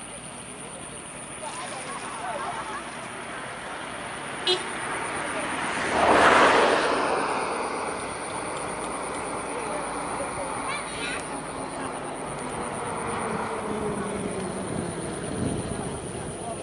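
An engine passing by: it swells to its loudest about six seconds in, then fades with a slowly falling pitch.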